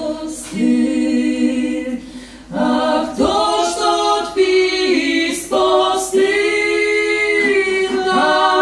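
Three voices, a man and two women, singing a Lemko folk song a cappella in close harmony, in phrases of long held notes. The singing dips briefly about two seconds in, then a new phrase starts.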